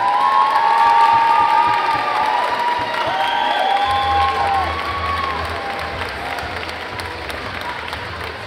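Crowd applauding and cheering, with several long held whoops and shouts over the clapping. It is loudest in the first couple of seconds and dies down after about five seconds, and a low steady hum comes in about halfway through.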